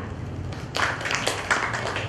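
Audience clapping, starting just under a second in and running on as a patter of hand claps.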